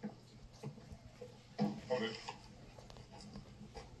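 A man's muffled vocal grunts and cries as a hand is clamped over his mouth and he is gagged, loudest between about one and a half and two and a half seconds in.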